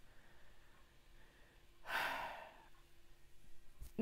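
A single breath from a person close to a clip-on microphone, like a sigh, about two seconds in. Otherwise there is quiet room tone with a faint steady hum.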